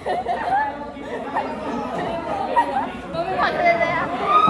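Excited chatter of several young women's voices overlapping, with laughter.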